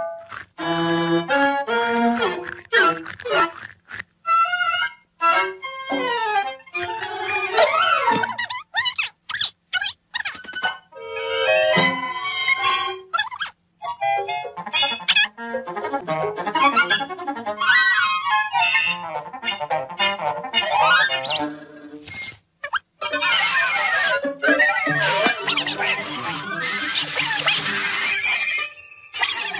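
Classic cartoon soundtrack music, stop-start, with quick runs and sliding notes broken by sudden hits. It gets denser and noisier a few seconds before the end.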